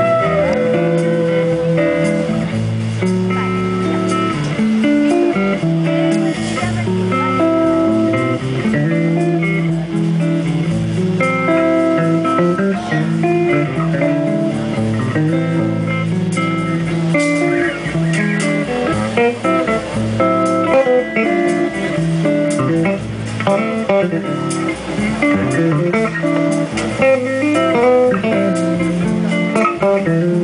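Live jazz quartet playing a bossa nova: a busy guitar solo of quick plucked notes over bass guitar and light drums. A held flute note ends right at the start, and the flute then rests.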